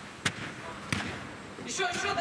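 Two sharp thuds of a football being struck, under a second apart, the first the louder, each with a short echo in the dome hall. Men's shouting starts near the end.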